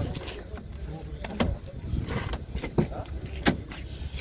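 The side window glass of a 1992 Opel hatchback being moved in its door, with a few sharp clicks and knocks over a low steady rumble.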